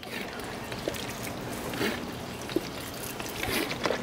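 Water squirting from a plastic squeeze bottle and splashing onto a flat rolled-steel griddle top, rinsing off soapy cleaner.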